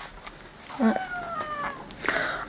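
A domestic cat meowing once, a drawn-out meow that starts about a second in and falls slightly in pitch.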